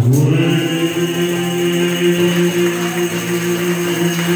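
A group of voices singing in harmony: they slide up into a chord at the start and hold it as one long, steady note.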